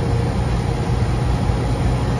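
Carrier rooftop air-conditioning unit running, a steady low hum of its compressor and condenser fans with even fan noise over it. The system has only just been restarted after an evaporator coil replacement and is still settling, its superheat and subcooling swinging.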